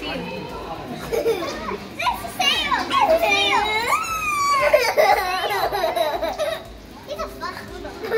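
Young children's excited wordless cries and squeals, high and rising and falling in pitch, loudest in the middle.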